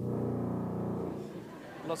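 Tuba playing one low held note that starts abruptly, holds for about a second and fades out.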